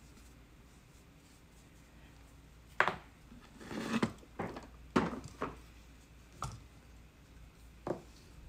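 Handling noise on a work table: quiet at first, then from about three seconds in a run of sharp knocks and a short scrape as a plastic tub is shifted aside and a dry clay pot is set down on a banding wheel.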